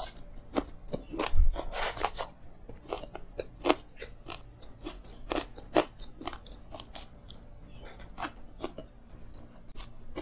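Close-miked chewing of crunchy food, a quick irregular run of sharp crunches, the loudest a little over a second in.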